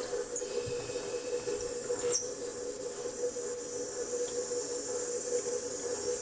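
Montgomery Ward USM 890 wringer washer's electric motor running with a steady hum and a faint high whine, unchanging throughout.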